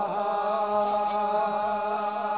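Voices chanting together on long, slightly wavering held notes over a steady low drone: Ethiopian Orthodox 'aqwaqwam' liturgical chant. A brief high metallic shimmer of sistrums comes about half a second to a second in.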